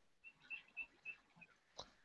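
Near silence: room tone, with a few faint, short high-pitched chirps and a soft click near the end.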